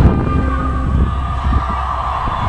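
Wind buffeting the microphone in an irregular low rumble, with a steady hum above it. Faint music fades out about a second in.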